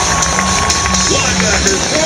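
Stadium crowd noise over PA music with a steady beat. A single held note runs through the first half and stops just over a second in.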